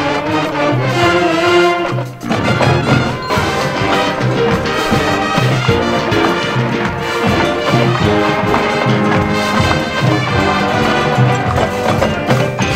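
Marching band playing, brass instruments leading over a moving low bass line, with a brief dip in loudness about two seconds in.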